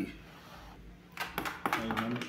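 A spoon scraping thick soap batter out of a plastic bucket: a run of short scrapes and knocks starting about a second in.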